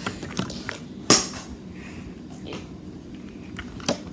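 Plastic Mini Brands capsule ball being pulled open and handled: scattered clicks and rustling, with a sharp snap about a second in and another just before the end.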